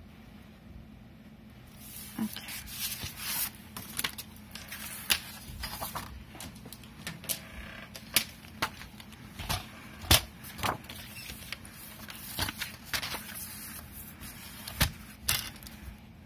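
Kraft cardstock being handled on a cutting mat and paper trimmer, starting about two seconds in: paper rustling and sliding, with many irregular sharp taps and clicks, the loudest about ten seconds in.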